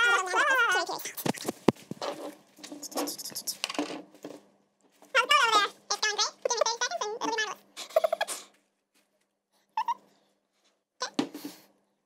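A woman singing wordlessly in a high, wavering voice in short phrases, with a few sharp clicks in between.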